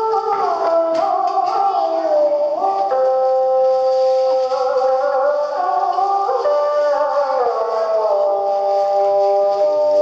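Traditional Vietnamese ensemble music played live, with zithers. The melody moves in long held notes that slide from one pitch to the next.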